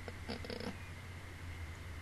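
A faint, short, creaky murmur from a person's voice in the first second, over a steady low electrical hum.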